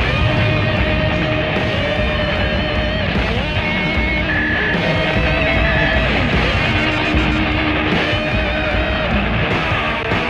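Film background score: loud, dense music with sustained notes and sliding pitches, and a guitar.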